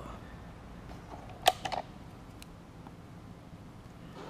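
A quick cluster of sharp clicks about one and a half seconds in, followed by two softer clicks and a faint one a little later, over a steady low hum.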